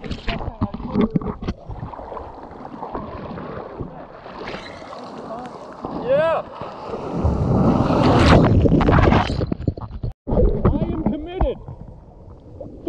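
Shorebreak water sloshing and splashing against a GoPro held at the waterline. About seven seconds in, a wave breaks over the camera with a loud rush of whitewater lasting a couple of seconds. The sound cuts out briefly just after ten seconds, as the camera goes under.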